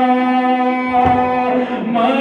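A man singing a noha, a Shia mourning lament, unaccompanied into a microphone. He holds one long steady note that slides down and breaks off near the end.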